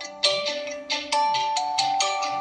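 Honor smartphone ringing for an incoming call: a melodic ringtone of quick, sharply struck notes, its phrase repeating, with a loud note about a quarter second in.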